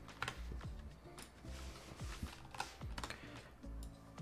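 Computer keyboard keys tapped in a loose scatter of short clicks, over quiet background music.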